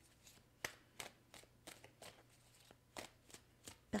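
A deck of tarot cards being shuffled in the hands: a faint, irregular run of short clicks and flicks as the cards slide and tap against each other.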